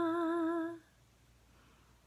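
A woman's unaccompanied voice holding the final note of a Telugu lullaby with a slight vibrato. The note ends under a second in, leaving near silence.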